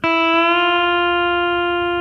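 Pedal steel guitar (Mullen G2) sounding a single sustained note on an open E string raised to F by a knee lever, struck once at the start and ringing on steadily. It is the F tuned dead in tune rather than flat as many tempered tuning charts have it.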